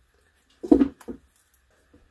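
Two brief handling noises as a thin cut piece of polyethylene milk-jug plastic is fingered over a paper-covered mat, the first louder than the second.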